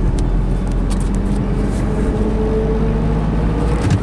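Car engine and road noise heard from inside the cabin while driving at a steady pace.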